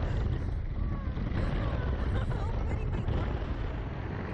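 Wind buffeting the onboard camera microphone of a swinging SlingShot ride capsule: a steady, heavy low rumble.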